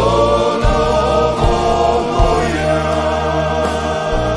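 Croatian klapa male vocal ensemble singing long held chords in close harmony, the chord changing about halfway through, accompanied by piano, acoustic guitar and bass in a live concert hall.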